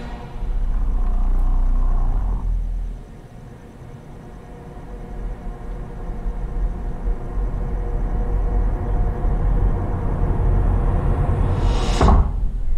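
Low rumbling drone from a horror trailer's soundtrack: it swells just after the start, falls away near three seconds, then builds again and ends in a sudden hit.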